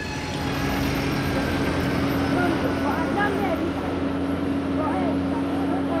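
A propeller airliner's engines running on the ground with a steady hum, with voices of people rising over it from about halfway in.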